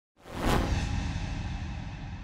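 Whoosh sound effect for an animated logo intro: a sharp sweep about half a second in, followed by a low rumbling, hissing tail that slowly fades.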